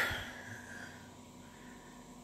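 A man's breath out, a soft hiss fading away over about the first second, then quiet room tone with a faint steady hum.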